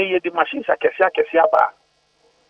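Speech only: a man talking over a telephone line, breaking off shortly before the end.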